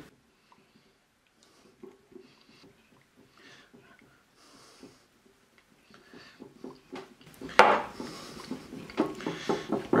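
Silicone whisk beating a vinaigrette in a small glass bowl: faint scattered swishes and taps at first, getting louder and more continuous from about seven seconds in, with a sharper clink against the glass then.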